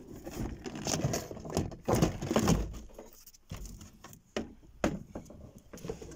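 2008 Nissan Qashqai plastic door card being lifted and pulled off the door: irregular scraping and rubbing of the panel, with a few sharp clicks in the second half.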